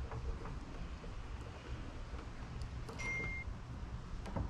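Faint handling sounds of double-sided tape being pressed along the edge of a carbon fiber spoiler, a few light ticks over a low steady hum. A brief high tone sounds about three seconds in.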